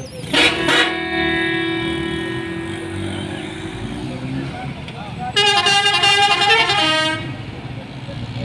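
Vehicle horns as a decorated passenger bus passes close by: two short blasts, then one horn held steadily for about three and a half seconds, and after a short gap a second horn with a different tone sounding for about two seconds. A low engine rumble from the passing traffic runs underneath.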